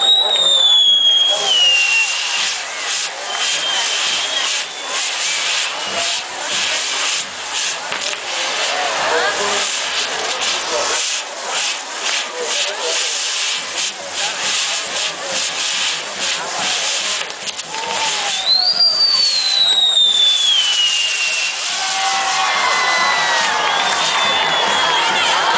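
Castillo fireworks tower burning: a dense, steady crackle and hiss of spinning fireworks, with a whistle falling in pitch at the start and another, longer falling whistle about three-quarters through. Crowd voices swell near the end.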